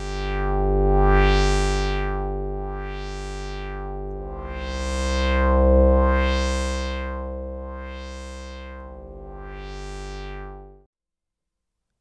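Synthesizer pad from a looped single-cycle sample in a Kontakt instrument, held notes whose low-pass filter an LFO sweeps open and shut about every second and a half, a rhythmic wah. The notes change about four seconds in, and the sound cuts off about a second before the end.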